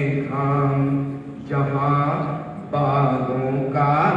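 A man singing lines of Hindi poetry in a slow, drawn-out melodic chant, holding long notes in phrases of about a second each with short breaths between.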